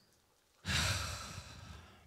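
A man's long sigh, breathed out close to a handheld microphone: it starts suddenly a little over half a second in and fades away.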